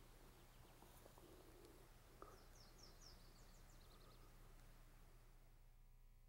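Near silence in the open, broken a little after two seconds by a faint, quick run of high bird chirps, each note falling in pitch, lasting about a second.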